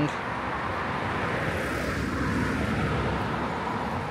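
A car passing along the road: a steady rush of tyre and engine noise that swells a little in the middle and eases off.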